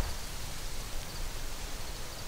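Steady outdoor ambience: a low, flickering rumble of wind with faint rustling.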